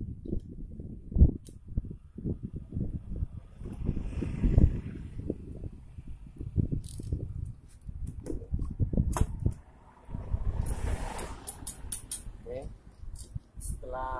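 Irregular knocks, bumps and metallic clicks as the cylinder block of a Honda Beat FI scooter engine is worked by hand down over its studs onto the piston.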